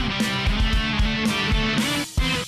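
Rock music on electric guitar with drums, held guitar notes over a steady beat of low drum hits.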